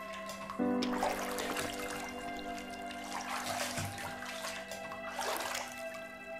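Bathwater sloshing and splashing as a person steps into a filled bathtub and settles down in it, with stronger splashes in the middle and near the end, over a soft music score of sustained tones.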